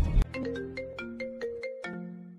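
Loud bass-heavy music cuts off a quarter second in. A quick marimba-like ringtone melody follows, about nine plinked notes at roughly five a second, growing quieter toward the end.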